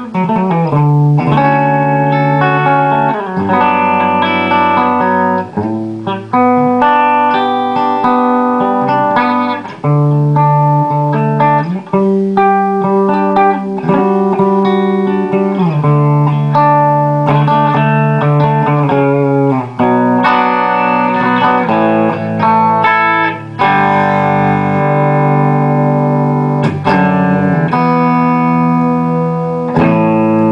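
2003 Paul Reed Smith Custom 22 Artist electric guitar with Dragon II pickups, played through an amplifier: a run of sustained single notes and chords, each held for a second or two. The pitch wavers with a bend or vibrato at the very start.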